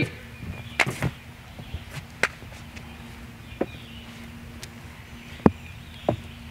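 About five sharp slaps and knocks at irregular intervals from hand strikes and footwork in a slow empty-hand Kali drill on a wooden deck; the loudest comes near the end. A steady faint low hum runs underneath.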